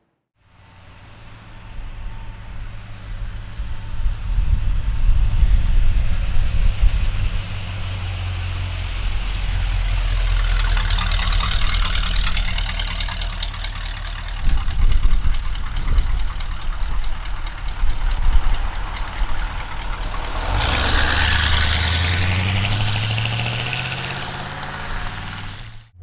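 A 1972 Chevrolet C10 pickup's 402 cubic-inch big-block V8 running through its new exhaust as the truck is driven, with a steady low rumble. About 20 s in, the revs climb as it accelerates.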